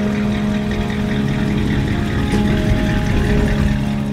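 Old Chevrolet pickup truck's engine running as it rolls along, a low rumble under steady background music.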